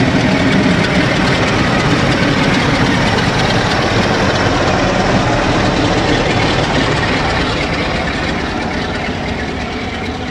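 Rear of a fast-moving passenger train passing: coaches rolling over the rails and the Class 47 diesel locomotive 47580 on the tail, its Sulzer V12 engine running. The train's sound holds steady, then fades away from about seven seconds in.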